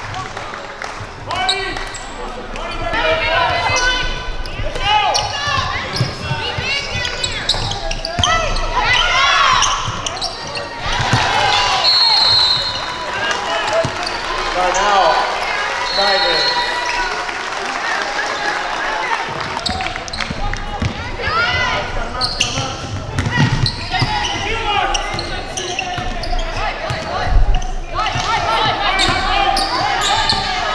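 On-court sound of a basketball game in a large gym: the ball bouncing on the hardwood, sneakers squeaking and players calling out. A referee's whistle sounds about twelve seconds in and again around sixteen.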